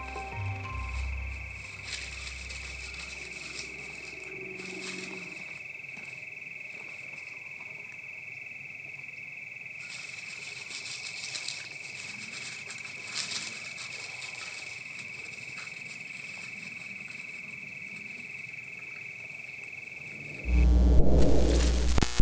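Low music notes fade out over the first few seconds, then a steady high-pitched drone holds with faint rustles and crackles, like an armadillo foraging in dry grass and leaves. The drone cuts off near the end as a loud, bass-heavy music sting comes in.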